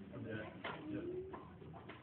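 Faint, indistinct voices in a large hall, with a few short sharp knocks about two-thirds of a second, one and a half seconds and near the end.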